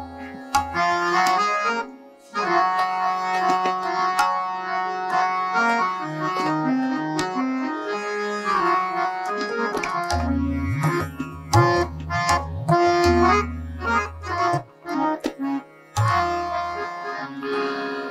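Harmonium playing a melodic passage with tabla accompaniment in Hindustani classical style. In the second half the tabla's bass drum adds deep, pitch-bending strokes.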